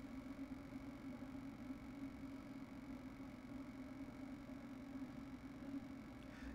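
Quiet room tone: a low steady hum with a faint hiss.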